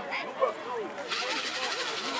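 Several voices of spectators and coaches talking and calling out over one another, with a steady hiss that comes in about a second in.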